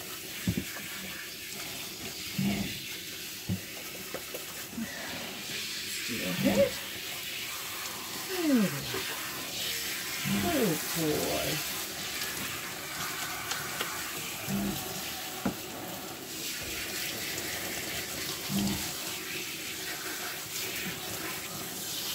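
Water running from a handheld shower spray head onto a dog's wet coat and splashing into the tub, a steady hiss, as the shampoo is rinsed out. A few short knocks and brief falling squeaky sounds come through around the middle.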